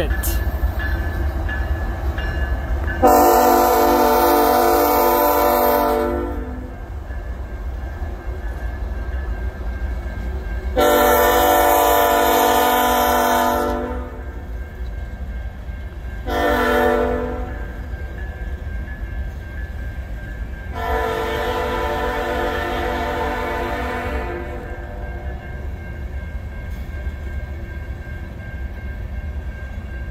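Locomotive air horn of a CN GE ET44AC sounding the grade-crossing signal: two long blasts, a short one and a final long one. Underneath is the steady low rumble of the moving freight train, with covered hopper cars rolling past.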